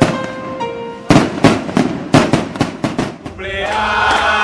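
Fireworks going off: a quick run of sharp bangs and crackles for about two seconds, starting about a second in. Near the end, a group of voices starts singing together.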